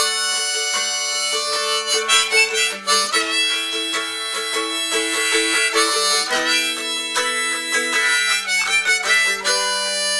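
A slow instrumental played on harmonica and mandolin together. A harmonica in a neck rack holds long chords and melody notes that change every second or so, over a picked mandolin.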